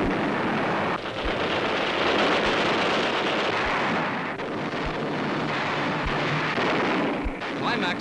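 Newsreel battle sound effects of a naval bombardment: a dense, continuous rumble of gunfire and explosions, with no single shot standing out.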